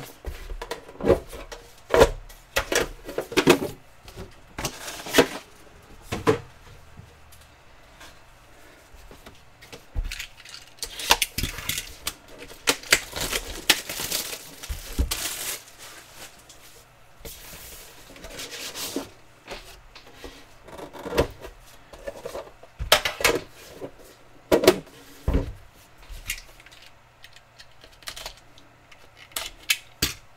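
Cardboard trading-card boxes and packs being handled by hand: scattered taps and knocks as boxes are picked up, set down and opened, with bouts of rustling and sliding in the middle.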